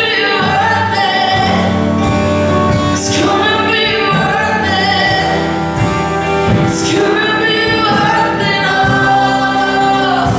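Live worship band playing a song with a singer: drums with repeated cymbal crashes, bass, keyboard and electric guitar.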